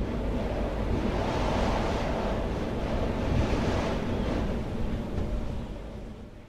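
A steady rushing noise, dense and without a tune, that fades away near the end.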